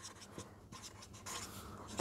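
Red felt-tip marker writing on paper: faint, short scratching strokes.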